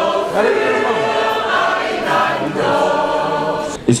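Choir singing, many voices together holding long notes.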